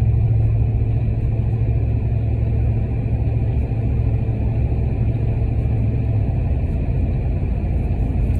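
Inside a pickup's cab at about 55 mph: steady road and tire rumble from Cosmo Mud Kicker mud-terrain tires, with little tire noise to be heard. Over it is a steady low exhaust drone from a Flowmaster American Thunder system, which fades out about six seconds in.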